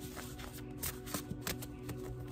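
A stack of paper index cards being thumbed through and shuffled by hand: a run of light, irregular papery clicks.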